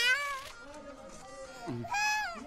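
Toddler crying loudly while being given oral polio vaccine drops. The wail falls in pitch and fades about half a second in, and a fresh cry starts near the end.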